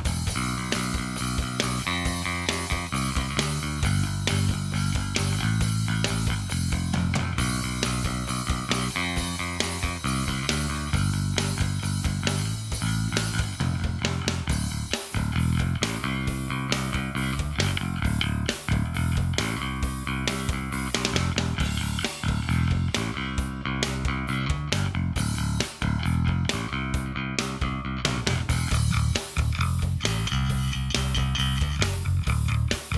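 Steinberger L2 headless graphite-and-carbon-fibre electric bass played fingerstyle, a steady running line of plucked notes.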